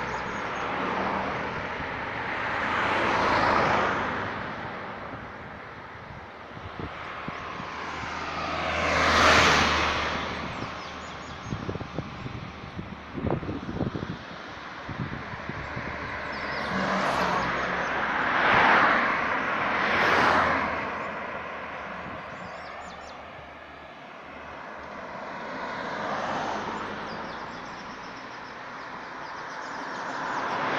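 Cars passing one after another on a two-lane road, each a swell of tyre and engine noise that rises and fades, five passes in all, the loudest about nine seconds in. A run of short, irregular clicks and knocks comes between the passes about eleven to fifteen seconds in.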